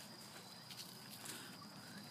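Faint footsteps and rustling on a dirt trail strewn with dry leaves, a few soft irregular ticks over a low hiss.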